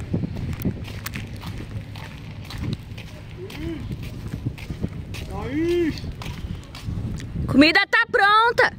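Footsteps on gravel with handling noise from the moving camera, and short bits of a person's voice about halfway through and again, louder, near the end.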